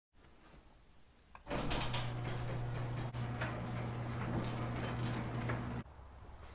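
Electric garage door opener running, a steady low motor hum with the door rattling and clicking along its track, starting about a second and a half in and cutting off abruptly just before the end.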